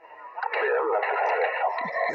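A man's voice received over single-sideband through the speaker of a Yaesu FT-817 transceiver, thin and narrow-band like a telephone, coming in about half a second in.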